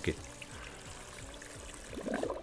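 Faint trickling and sloshing of water from the bucket that holds the spool of monofilament line while the line is reeled onto a spinning reel.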